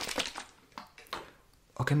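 A plastic bottle being handled close to the microphone: a quick run of sharp taps and clicks, then a few single clicks, then a near-quiet pause. A spoken 'Ok' comes near the end.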